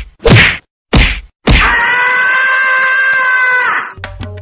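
Edited-in comedy sound effects: four quick sharp whacks in the first second and a half, then a long steady held tone of about two seconds that cuts off just before the end.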